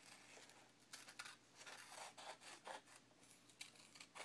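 Scissors cutting through thin origami paper: a run of faint, short, irregular snips.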